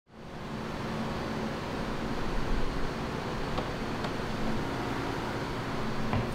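Steady hum and rush of running machinery, fading in at the start, with a couple of faint clicks midway.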